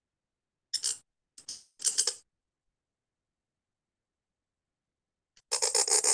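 Reed calligraphy pen (qalam) scratching across paper as it draws a letter: three short scratches about a second in, then a quicker run of scratching near the end.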